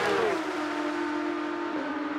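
Porsche 911 GT3 Cup race cars' flat-six engines passing close by at full speed. The engine note drops sharply in pitch as they go past, then holds steady as they pull away, dipping again slightly near the end.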